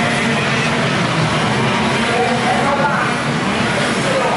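A pack of KZ2 shifter karts with 125cc two-stroke engines running together around the circuit, their pitch rising and falling as they rev.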